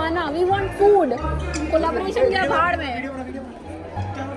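Indistinct voices of several people talking over one another, with background music's low bass notes underneath.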